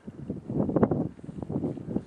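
Wind buffeting the camera microphone in rough gusts of low rumble.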